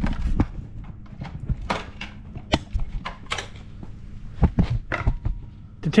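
Irregular clicks, knocks and scrapes of a screwdriver prying at the plastic cover and its clips on a Ford Bronco's front end, a dozen or so sharp hits spread through the few seconds.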